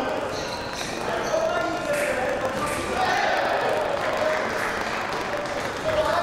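Fencers' shoes squeaking and stepping on the piste, with voices in a large hall.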